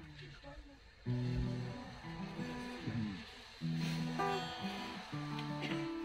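Guitar chords struck one at a time and left to ring, about a second, three and a half seconds and five seconds in.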